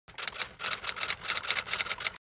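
Typewriter keys clacking in a quick, uneven run, about six or seven strikes a second, as a typing sound effect; it stops abruptly at the end.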